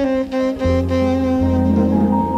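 Live jazz: a tenor saxophone holds a long note while an upright double bass, plucked, comes in with deep low notes about half a second in and again near the middle.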